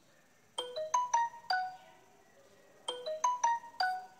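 A phone ringtone: a short tune of bright, chime-like notes, played twice.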